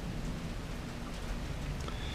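Steady low hiss of room tone with a faint hum underneath, no distinct events.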